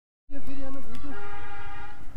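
Horn sounding one long steady note from about a second in, after a shorter wavering pitched tone at a lower pitch.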